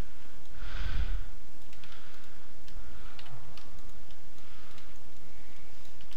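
Faint clicks of a computer mouse and keyboard over steady low microphone noise, with a soft breath about a second in.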